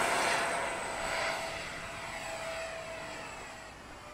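Twin 70 mm electric ducted fans of an RC F-22 model jet giving a steady high whine with air rush as the jet takes off. The sound fades as it climbs away, and the whine dies out near the end.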